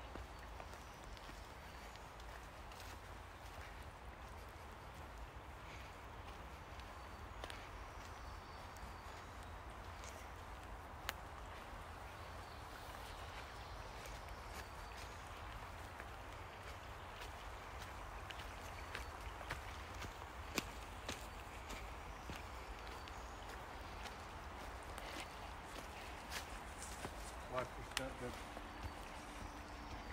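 Faint, steady rush of flowing river water, with a few scattered footsteps on a forest trail.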